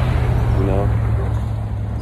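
Steady low engine drone with a rushing noise over it, from a motor running nearby; a brief voice sound a little under a second in.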